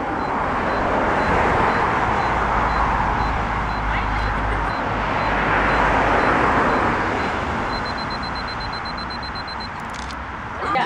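Rushing road noise from cars passing on a street, swelling and fading twice, with a low rumble midway. Under it, a faint high camera self-timer beep repeats evenly, then turns rapid and nearly continuous near the end as the timer counts down to the shot.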